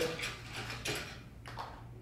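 A few light clicks and rustles as an electrical cord is pulled through the hole in an aquarium lid, over a faint steady low hum.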